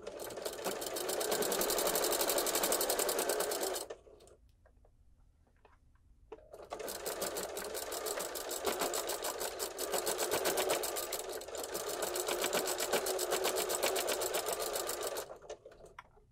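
Necchi electric sewing machine stitching through layers of pillow fabric with a fast, steady needle rhythm. It runs for about four seconds, stops for a couple of seconds while the fabric is repositioned, then runs again for about nine seconds.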